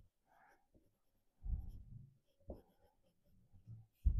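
Pencil drawing on a sheet of paper held against a hardboard drawing board: faint, short strokes, the heaviest run about a second and a half in.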